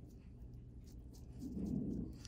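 Faint scraping of a scalpel blade over dry, flaky dead skin, in a few light strokes, with a soft low sound near the end.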